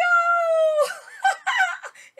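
A woman's long, high-pitched excited cry, held for just under a second, then a quick run of short, excited vocal sounds.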